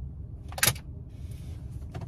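Steady low rumble inside a car cabin, with one sharp click a little over half a second in and a fainter click near the end.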